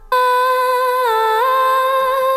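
An unaccompanied female voice holding one long sung note, dipping slightly in pitch about a second in and then settling back up: a vocal track of the song played on its own.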